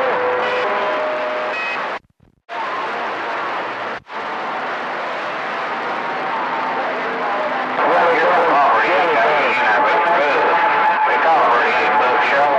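CB radio receiver on channel 28 giving out a loud hiss of static, with a few steady whistle tones in the first second or so. The signal cuts out for about half a second two seconds in and dips again briefly at four seconds. From about eight seconds in, faint garbled voices come through the noise.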